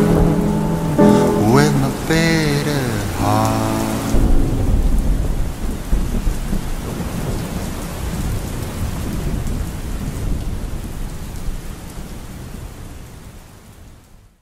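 A sung song ends about four seconds in and gives way to steady rain with a low rumble of thunder, which fades out near the end.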